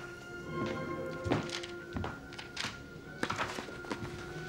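Footsteps on a hard floor: a handful of uneven knocks and thunks as a person walks across a small room. Soft background music with long held notes runs underneath.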